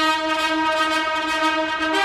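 A fanfare on long herald trumpets hung with banners: bright held brass chords, the chord changing near the end.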